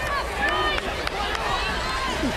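Outdoor football crowd noise: a steady din with scattered distant shouting voices.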